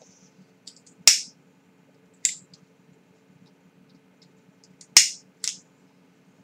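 Cigarette lighter clicked as a cigarette is lit: four sharp clicks, two about a second apart, then a pause and two more in quick succession near the end.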